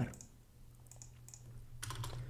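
A few soft computer keyboard and mouse clicks, scattered and faint, with a slightly louder click near the end, over a low steady hum.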